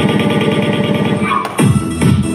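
Upbeat electronic dance music for a dance workout. A fast run of rapid beats breaks off about one and a half seconds in, then a heavy beat comes back in.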